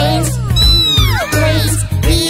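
Upbeat children's song with a steady bass beat. A sung line about choo-choo trains is followed by a string of overlapping tones that glide up and down in pitch.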